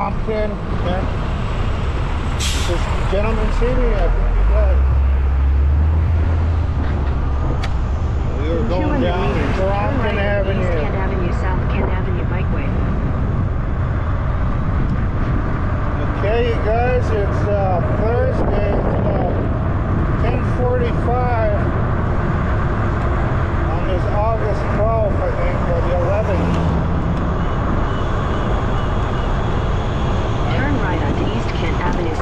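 Steady wind and road noise of riding an e-bike alongside traffic, with a heavy truck's low engine rumble early on and a short sharp hiss, like a truck's air brake, about two and a half seconds in. Indistinct voices come and go over the noise.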